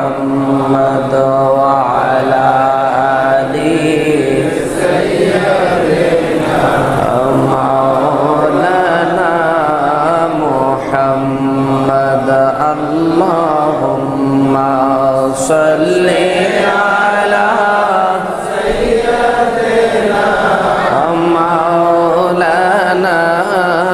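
A man's voice chanting a long melodic religious recitation into a microphone, holding drawn-out, wavering notes with only brief pauses for breath.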